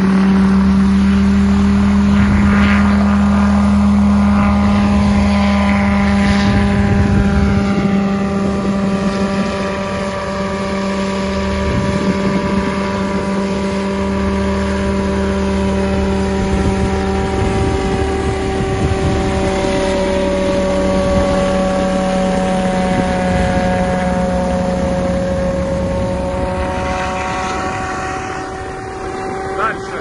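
Heavy-lift multirotor cargo drone in flight, its rotors giving a loud, steady drone with a strong low hum. The pitch drifts slightly as it manoeuvres.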